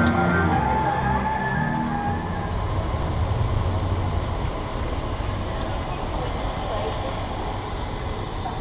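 Music ending within the first two seconds, then a steady rushing noise of a rainy city street with traffic.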